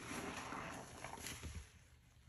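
A soaked green sponge squeezed and kneaded by hand in a sink of thick detergent foam: wet squelching and crackling suds, fading out near the end.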